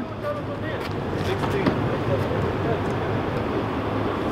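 Steady outdoor background noise: a low, even hum under a noisy rush, with no distinct events.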